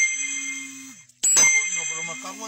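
Phone notification chime, a bright bell-like ding, interrupting over and over: one ringing out and fading at the start, another struck about a second and a quarter in.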